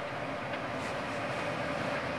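Steady room noise: an even hum with a faint steady tone, like air conditioning running in a small room.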